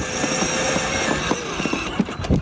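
Electric motor and gearbox of a children's ride-on toy Range Rover Evoque whining steadily as it drives along, with a slight dip in pitch after about a second and a half.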